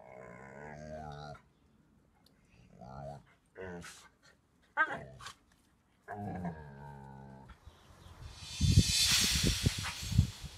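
American Akita dogs making low play growls and grumbling vocalisations in several short bouts, with a sharp click about five seconds in. Near the end a loud rushing noise with low thumps covers everything.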